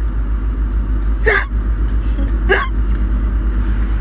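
Steady low rumble inside a car cabin, with two brief voice sounds that fall sharply in pitch, one about a second and a half in and one about a second later.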